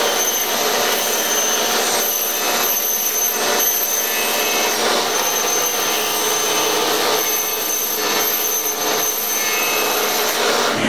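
Table saw running steadily with a high whine while a kiteboard core is pushed along the fence through the blade.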